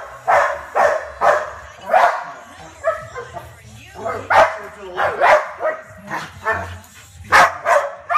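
Dog barking repeatedly, about two barks a second, with a short pause a few seconds in.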